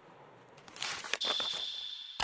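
Broadcast transition sound effect: a whoosh that swells in under a second in, followed by a single high, steady ringing tone.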